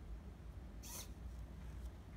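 A smart cane's servo-driven plastic gripper closing on a cardboard container, heard as one short, faint scrape about a second in over a low steady hum.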